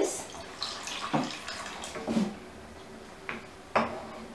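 Water poured from a mixer jar into a pan of pea curry, splashing in, loudest in the first second; then a few light knocks as a wooden spoon stirs the pan.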